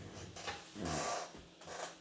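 A man taking a drink: swallowing, with a few short voiced breaths through the throat.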